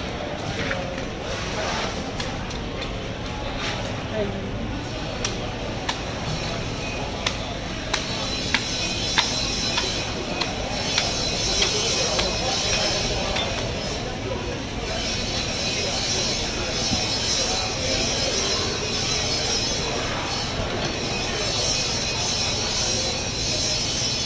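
Knife blade clicking and knocking as it is worked into the head of a giant bluefin tuna, with a scatter of sharp clicks mostly in the first half, over a steady background din.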